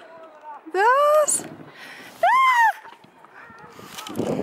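Two high-pitched excited squeals from a voice. The first rises and holds about a second in; the second arches up and down just past two seconds.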